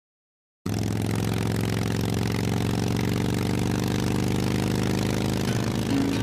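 Motorcycle engine idling steadily, cutting in suddenly just under a second in, with music starting to come in near the end.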